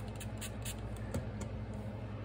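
Steady low hum of a room air conditioner, with a few short hissing spritzes from a handheld water spray bottle during the first second and a half.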